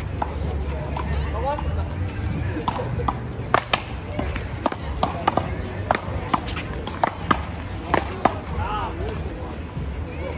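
One-wall paddleball rally: paddles hitting a rubber ball and the ball smacking off the concrete wall and court. It comes as a quick series of sharp smacks that starts about two and a half seconds in and ends a little after eight seconds, over background voices.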